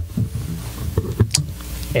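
Yamaha electric bass: a held low note is cut off at the start, followed by a few short, quiet plucked notes and sharp clicks of fingers on the strings.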